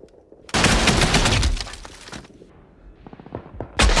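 Rapid automatic gunfire from a war film's battle soundtrack: a dense burst starting about half a second in and lasting nearly two seconds, a few scattered quieter shots, then another loud burst near the end.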